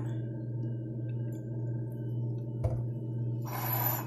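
A steady low electrical hum, with a single knock about two and a half seconds in and a short burst of hiss near the end.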